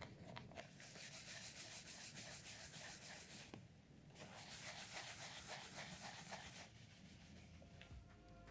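A stiff bristle brush is rubbed quickly back and forth over a shell cordovan leather wallet. It comes in two faint stretches of rapid strokes, each about three seconds long, with a short pause between them.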